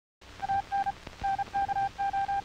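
A string of electronic beeps at one steady pitch, some short and some longer at irregular spacing like Morse code. They sound over the hiss and crackle of an old film soundtrack, with a couple of sharp clicks.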